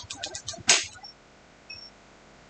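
Handling noise at a workbench: a quick run of small clicks, then a louder clatter, followed by two faint, brief high beeps.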